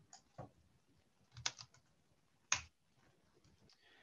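A few separate, faint computer keyboard key presses, the sharpest about two and a half seconds in.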